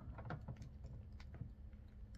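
Faint, scattered clicks and taps of plastic wrestling action figures being handled and moved, over a low steady hum.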